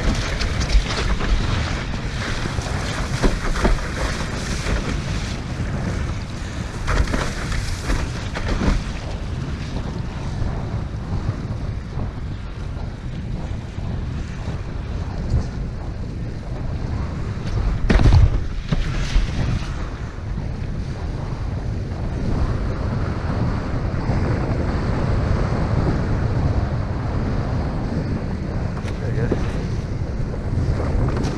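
Wind rushing over the microphone with water hissing and slapping around a windsurf board. The hiss of spray eases after about eight seconds, and a louder buffet of wind comes about eighteen seconds in.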